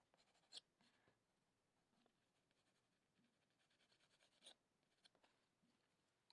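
Near silence with faint scratching of a Caran d'Ache Luminance colored pencil shading on watercolour sketchbook paper: a few soft strokes, the clearest about half a second in and about four and a half seconds in.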